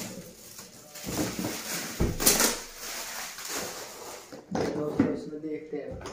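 Metallic foil gift wrap crinkling and rustling in a few short bursts as it is pulled off a cardboard box.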